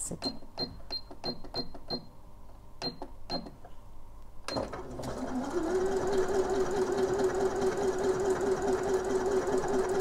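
Elna eXperience 450 computerized sewing machine: a quick run of short electronic beeps as the stitch-selection button is pressed repeatedly, then a few more. About four and a half seconds in, the machine starts sewing; its motor rises to speed within about a second and then runs steadily.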